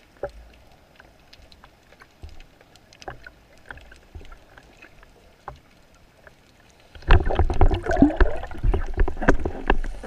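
Underwater sound through a speargun-mounted camera: a few faint scattered clicks, then about seven seconds in a loud burst of rumbling, knocking and bubbling as the speargun is handled and the speared fish is taken in hand.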